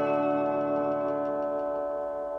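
A strummed chord on a Gretsch Electromatic electric guitar through a Peavey Classic 20 amp, left ringing and slowly fading away.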